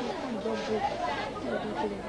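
Several people talking over one another in market chatter; only speech is heard.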